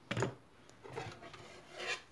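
A few faint, brief rubbing and scraping sounds of kitchen utensils being handled, the loudest just after the start and near the end.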